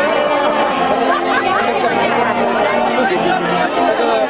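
Crowd of many voices talking and calling out at once: a steady chatter with no single voice standing out.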